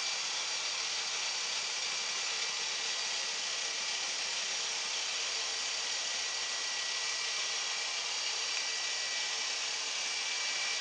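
Small electric motors and rotor of an Air Hogs Fly Crane toy helicopter spinning at full power in a steady, high-pitched whine. The helicopter stays on the ground despite a freshly charged new LiPo battery, and the owner suspects the motors are at fault.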